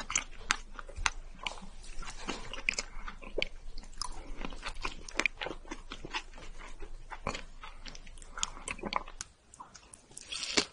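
Close-miked sticky sounds of strawberry mochi being handled, pulled apart and eaten: a dense run of soft, wet clicks and smacks that stops about nine seconds in.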